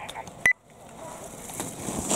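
Skis carving on hard-packed snow: a scraping hiss that builds as a skier turns close by. About half a second in there is a short click, followed by a sudden drop-out.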